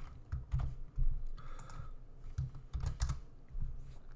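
Computer keyboard typing: an irregular run of key presses, each a short click with a dull thud.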